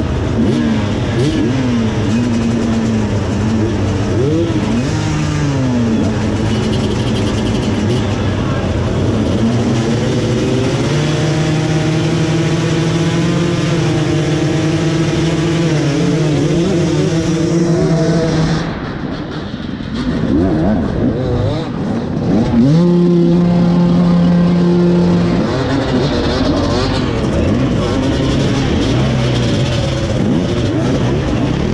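Several enduro motorcycle engines revving on a race start line, rising and falling at first and then held at steady high revs. About two-thirds through the loudness dips briefly, then the engines run hard again as the pack pulls away.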